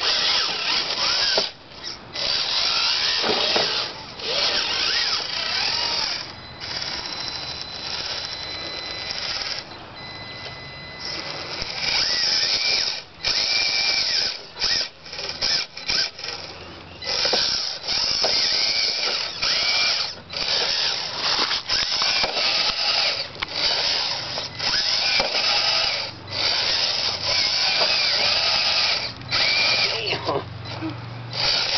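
Scale RC rock crawler's electric motor and geared drivetrain whining in stop-start bursts as the throttle is worked, the truck grinding up over rocks. A quieter, steadier whine runs for a few seconds in the first half.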